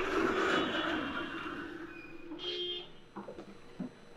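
A sliding door rolling along its track, starting with a sudden loud bump and then a long rolling rumble with a steady squeal that fades over about three seconds. A shorter squeak follows about two and a half seconds in.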